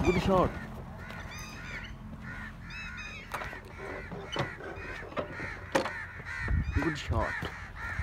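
Birds calling repeatedly in the open field, short arching calls that come in a cluster about one to three seconds in and again more densely near the end.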